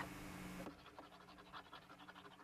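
Faint scratching of a marker writing out handwritten words, heard as a quick run of short strokes. A brief hiss with a low hum opens it.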